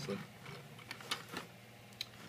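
Plastic Transformers Armada Optimus Prime toy truck rolling on its wheels across a tabletop, with a few light clicks about a second in.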